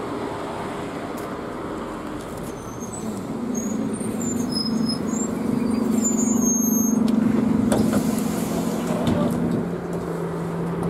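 A bus pulling in to the stop and idling: its engine hum swells from about three seconds in, holds steady, then settles to a lower note near the end. Short high squeals sound as it comes to a stop.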